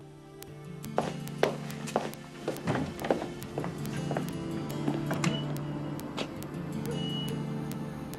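Background music with footsteps on a hard floor, sharp steps about two a second starting about a second in and fading after a few seconds.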